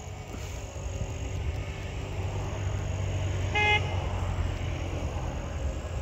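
Steady low rumble of a motor vehicle running, with a single short car-horn beep about three and a half seconds in.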